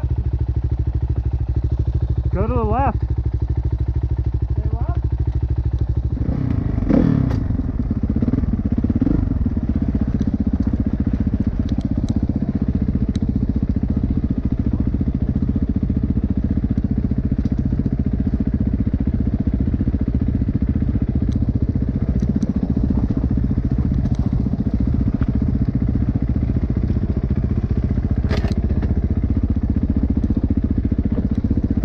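Kawasaki 450 dirt bike's single-cylinder four-stroke engine running steadily, growing louder about six to seven seconds in. A short warbling squeal comes about two and a half seconds in, and a few sharp clicks follow later.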